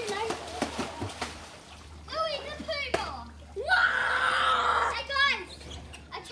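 Children's voices calling out and yelling, with one loud, drawn-out yell about four seconds in, over water splashing in a swimming pool during the first second.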